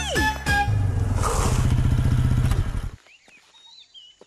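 A film song's music ending on a falling note. An engine follows, running with a low rumble in rapid, even pulses for about two seconds, then cutting off suddenly, leaving faint quiet with a few high chirps.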